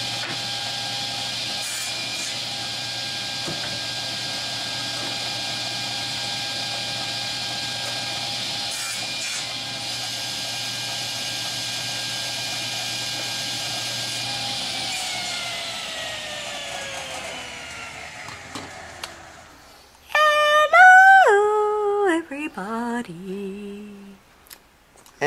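Table saw with an old blade running at steady speed while cutting up scrap wood. About fifteen seconds in it is switched off, and its whine falls steadily in pitch as the blade spins down. Near the end a voice speaks in a rising and falling singsong.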